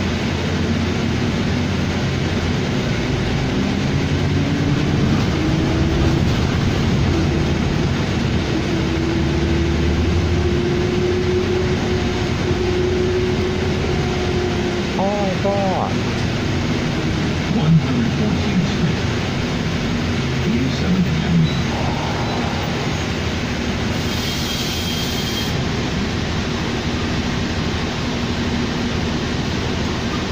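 Cabin sound of a 2007 New Flyer D40LFR diesel city bus under way: the engine and drivetrain run steadily with road noise, and a whine climbs in pitch for several seconds and then holds as the bus gathers speed.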